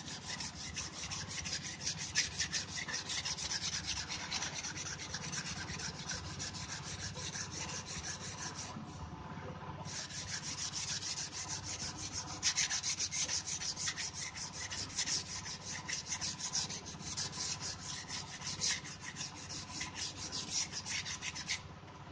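Hand-held sandpaper rubbed back and forth along a split bamboo slat in quick, even strokes, smoothing its sharp edges before painting. The rubbing breaks off for about a second around nine seconds in, then carries on until just before the end.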